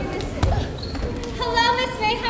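A single heavy thump about half a second in, from performers dropping onto the wooden stage floor, followed about a second later by voices calling out.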